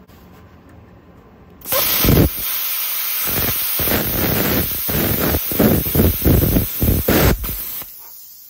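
BESTARC BTC500DP plasma cutter cutting quarter-inch steel plate: the arc strikes about two seconds in and runs with a loud, steady hiss and a fast, uneven crackle. The arc stops shortly before the end, and a softer air hiss carries on.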